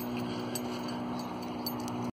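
Steady low background hum with a constant drone, and a faint tick near the end.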